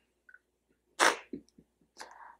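A single short, sharp burst of breath from a person, about a second in, followed by a couple of faint soft sounds.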